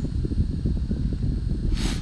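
A steady low rumble of background noise, with a man's short, hissy breath near the end.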